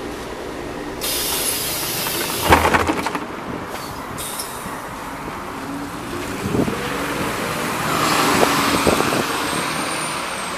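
MAZ-103.485 city bus at a stop: a hiss of air as its pneumatic doors open about a second in and a clatter about two and a half seconds in, then the bus's diesel engine rising in pitch as it pulls away through street traffic.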